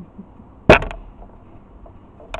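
A single sharp knock about two-thirds of a second in, with a short fade after it.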